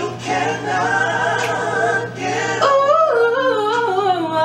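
A woman singing solo in a gospel-pop style over a backing track, holding notes with vibrato and moving through stepped melismatic runs in the second half.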